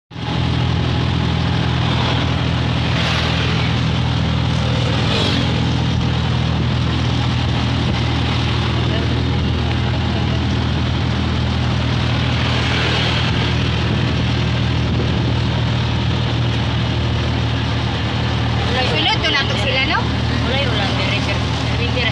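Steady low engine hum and road and wind noise of a moving vehicle, heard from inside the passenger compartment; voices come in near the end.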